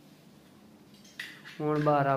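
Metal clinking from the steel channels of a false-ceiling grid being handled, starting a little past halfway; a man's voice begins near the end.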